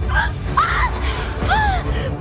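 A woman choking and gasping as she is strangled by hands at her throat: three strained, choked cries, each rising and falling in pitch, over dark dramatic background music.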